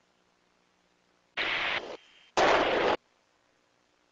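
Two bursts of static hiss, each about half a second long, starting and cutting off abruptly about a second and a half in, with a short faint gap and a thin whistle tone between them.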